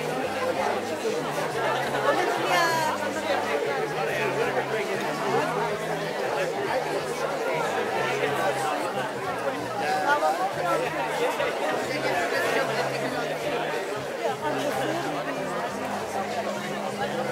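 Crowd chatter: many people talking at once in overlapping conversations, a steady babble of voices with no one voice standing out.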